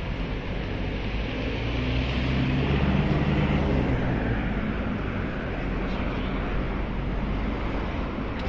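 Wind rumbling on a handheld microphone over street traffic noise, with a vehicle engine swelling and fading about two to four seconds in.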